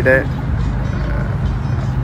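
Steady low rumble of a cruise boat under way on the canal, with faint music playing on board.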